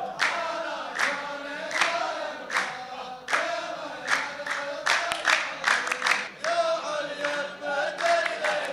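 A row of men chanting a poetic refrain in unison, with hand claps on a steady beat about every 0.8 s. The claps come closer together for a moment past the middle. This is the chorus line (saff) of a Saudi muhawara singing back the poet's tarouq.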